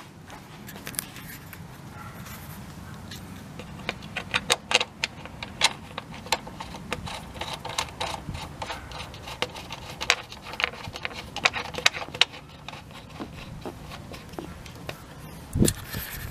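Irregular metallic clicks and clinks of a hand tool on a 13 mm bolt as it is fastened into the new electric fan's shroud, coming in clusters with short pauses between.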